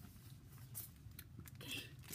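Faint rustling and light clicks of a foil Pokémon booster pack being handled.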